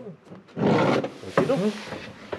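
A man's rough, noisy vocal outburst about half a second in, like a groan of effort, followed by a brief voiced sound.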